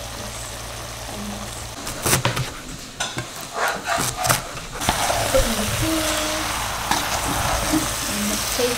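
Minced-meat filling sizzling in a pot. In the middle comes a run of sharp knocks as a large knife chops fresh greens on a plastic cutting board, then the steady sizzle returns as the mince, potato and peas are stirred.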